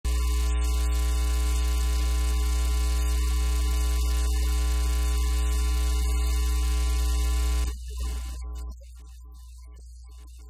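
Loud, steady electrical mains hum: a low drone with a buzz of many evenly spaced overtones. About eight seconds in it sputters and drops away to a much fainter hum.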